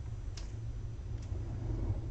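Small craft scissors snipping a little paper label: one sharp snip about half a second in and a fainter one about a second later, over a steady low hum.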